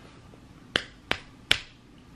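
Three finger snaps in quick succession, a little under half a second apart.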